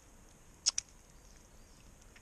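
Two quick sharp clicks, about a tenth of a second apart, from the wire-mesh minnow trap being handled as it is held open; otherwise only faint outdoor background.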